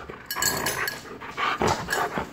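Siberian husky panting in a few short, noisy breaths while worked up from play.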